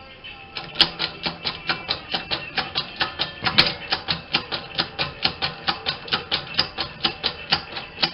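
Hammer tapping the punch of a punch-and-die set to drive it through a coin: quick, even metallic taps, about five a second, starting about half a second in.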